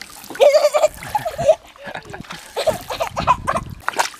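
Pool water splashing, with a young girl's short wordless vocal sounds about half a second in, around a second and a half, and again near three seconds.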